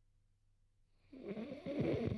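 A man's voice: a loud, low vocal sound that starts about a second in and lasts just over a second, its pitch wavering and falling toward the end.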